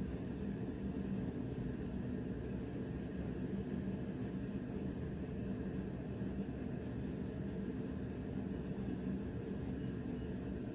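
Steady low machine hum of a running motor, unchanging throughout, with a faint steady tone in it.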